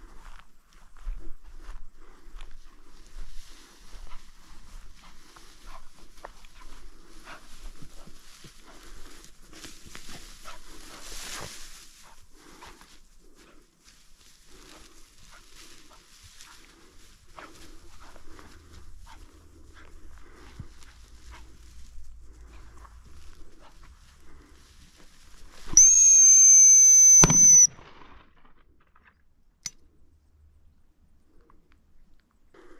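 Footsteps swishing through dry tussock grass. Then, near the end, one loud, steady, high-pitched blast of about two seconds on a gundog whistle to direct a working cocker spaniel.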